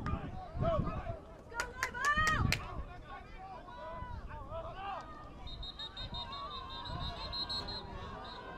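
Shouting voices on a football field: players calling out at the line of scrimmage while coaches and spectators yell, loudest about two seconds in. From about five and a half seconds in, a long high warbling whistle sounds, typical of a referee's whistle blown around the play.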